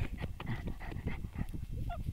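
A dog sniffing hard and fast with its nose in dry grass and soil, rustling the stalks, with a few faint high whimpers: snuffling after the scent of a mouse or vole.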